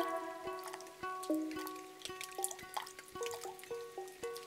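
Quiet, sparse music: single soft plucked notes at stepping pitches, a few every second, with small clicks between them.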